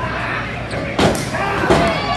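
A single sharp slam about a second in, from a wrestler hitting the ring mat, with shouting voices around it.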